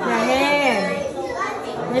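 Speech only: a young child talking, with a woman starting a question right at the end.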